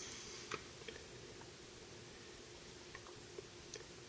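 Quiet room tone with a few soft clicks and taps from a rifle and its mounted scope being handled and turned over in the hands.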